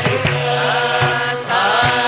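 Carnatic vocal music: a woman's voice singing a melodic line over a steady low drone, with repeated drum strokes.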